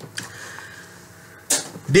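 A pause in a man's monologue: quiet room tone, then a short, sharp intake of breath about one and a half seconds in, with his speaking voice starting again at the very end.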